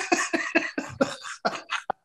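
Two men laughing, a rapid run of short breathy bursts of laughter that grows fainter near the end.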